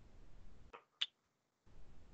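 Near silence of a video call, the faint background hiss cutting in and out, with one short sharp click about a second in.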